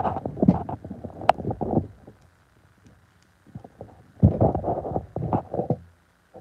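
Handling noise from the recording phone being gripped and repositioned: muffled rubbing and bumping on the microphone in two bouts, with a sharp click a little over a second in.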